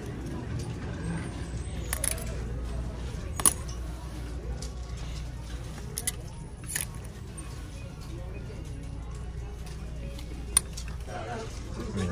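Plastic clothes hangers clicking and scraping along a clothing rack as shirts are flipped through, a handful of sharp clicks over a low steady hum of store background.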